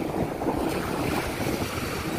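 Sea waves washing up on a sandy beach, with wind buffeting the microphone in low rumbles.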